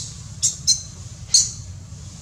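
Baby long-tailed macaque giving three short, high-pitched screams in quick succession. These are distress cries while an adult monkey holds it down after grabbing its tail.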